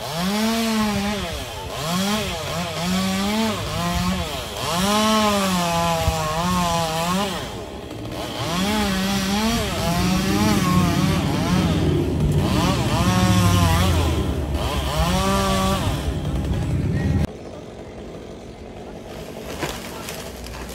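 Two-stroke chainsaw cutting through a palm trunk. Its pitch dips and recovers again and again as the chain bogs into the wood and the throttle is opened back up. It stops abruptly near the end.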